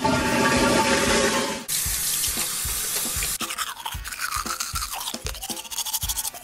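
Water rushing, then a bright hiss of running water. From about halfway in, a toothbrush scrubs in quick, even strokes, about four a second.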